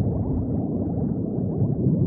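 Underwater recording of a continuous stream of bubbles: a steady, muffled bubbling made of many small blips that rise in pitch.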